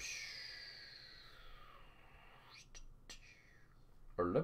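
A person's long breathy exhale, like a soft whispered sigh, falling in pitch and fading over a couple of seconds, followed by two or three light clicks.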